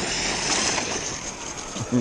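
A large 1/5-scale electric RC buggy, the Losi DBXL-E on 8S power, driven hard at full throttle across grass: a steady noise of motor, drivetrain and tyres that fades a little as it runs.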